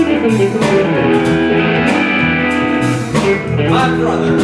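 Live blues band playing, with electric guitars to the fore over bass and drums.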